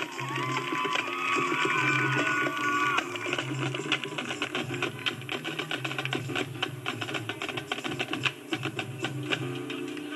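Marching band playing: held wind and brass chords with bending notes for about three seconds, then a busy passage of rapid drum strokes over low sustained notes. Dubbed from a VHS tape through a phone.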